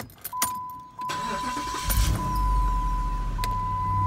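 Jeep Grand Cherokee SRT8's 6.1-litre Hemi V8, with a cold air intake, cranking and catching about two seconds in, then settling into a steady idle. A steady high warning chime from the dash sounds from just after the start, the door-open warning.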